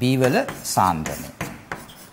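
Chalk writing on a blackboard: a quick run of short taps and scrapes as letters and brackets are drawn, starting about a second in.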